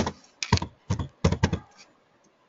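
Computer keyboard typing: a quick run of about nine keystrokes in small clusters, which stops shortly before the end.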